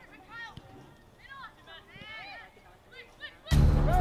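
Distant voices calling out across a soccer field in short, rising-and-falling shouts. About three and a half seconds in, a sudden loud rush with a low rumble starts close to the microphone.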